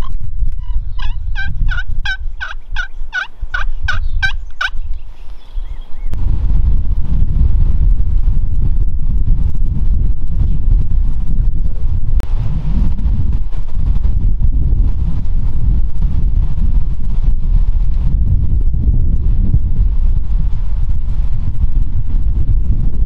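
Wild turkey calling: a series of about ten evenly spaced yelps over roughly four seconds. From about six seconds in, a steady low rumble on the microphone takes over.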